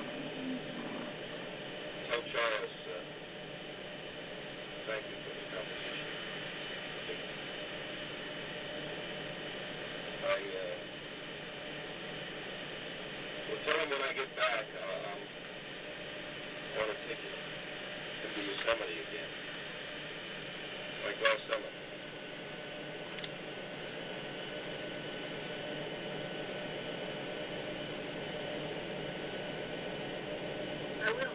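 Steady radio-transmission static with a faint hum, broken every few seconds by short crackling bursts, like the sound track of recorded capsule footage played back on a video monitor.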